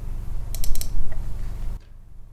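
A quick run of about four sharp clicks from a computer's controls, over a steady low hum that cuts off shortly before the end.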